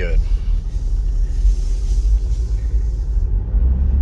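Inside the cab of a moving Toyota Land Cruiser 80 series turbo-diesel: a steady, low engine and road rumble.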